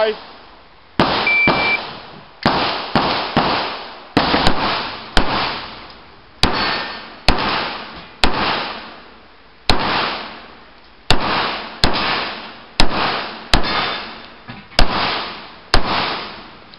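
Shot-timer start beep, then a string of about two dozen pistol shots fired in quick, uneven bursts with short pauses, each shot ringing off briefly in the covered bay.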